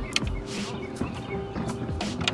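Soft background music with a few light clicks and rustles from hands knotting a rope onto a plastic handle.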